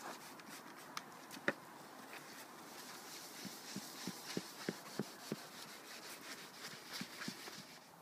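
Hot boiled hemp, tares and maize tipped from a cooking pan into a plastic bowl: faint scattered knocks and a soft hiss.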